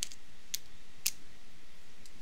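Two light, sharp clicks of computer controls (keyboard or mouse buttons), about half a second apart, over a faint steady hiss.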